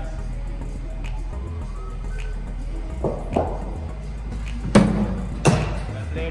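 A cricket ball delivered by a bowling machine and met by the batsman: two sharp knocks near the end, about three-quarters of a second apart, the loudest sounds here. Two lighter knocks come a second or so earlier, over a steady low hum.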